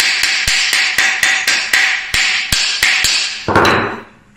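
A small steel hammer rapping a wooden hand plane's body about four times a second, each blow a sharp, ringing tap, the usual way to loosen a plane's iron and cap iron. Near the end there is a louder, rougher clatter.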